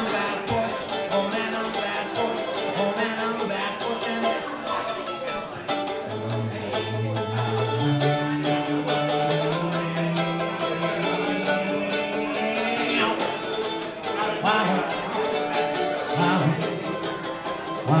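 Live folk music: fast, steady strumming on a small acoustic stringed instrument, with long held wordless sung notes over it.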